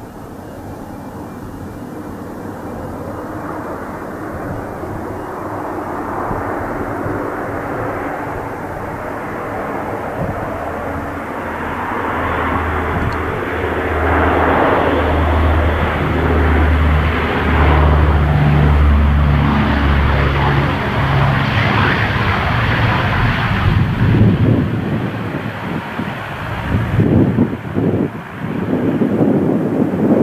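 Four turboprop engines of a C-130 Hercules running on approach, their drone growing steadily louder as the aircraft comes in low over the runway. A deep propeller throb is loudest in the middle, and the sound turns uneven and gusty near the end as the aircraft rolls along the runway.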